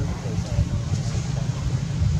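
Low, rough rumble of wind buffeting the microphone, with faint voices in the background.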